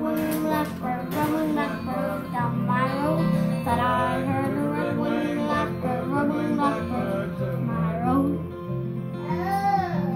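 A young boy singing a folk song over sustained instrumental accompaniment, his voice sliding between notes and rising then falling on a held note near the end.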